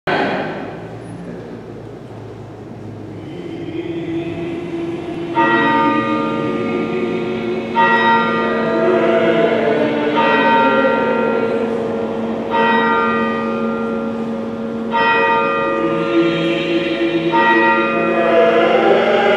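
A single church bell tolling slowly, six strokes evenly spaced about two and a half seconds apart, starting about five seconds in, each stroke ringing on under the next.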